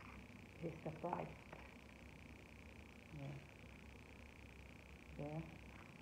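A faint, steady high-pitched hum runs underneath, with a few brief spoken words on top and no clear handling noises.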